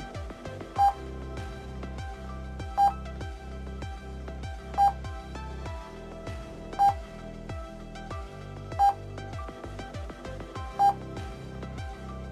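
Short electronic beep every two seconds, six in all, each one sounding as a training program flashes up the next number to add or subtract. Background music plays underneath.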